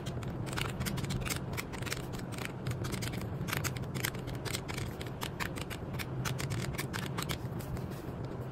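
Rapid clicking of plastic calculator keys as figures are tapped in, many presses a second in sped-up footage, over a steady low background hum.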